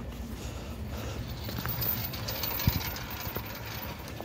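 A steady low engine rumble, like a motor idling, with a single sharp knock about two and a half seconds in.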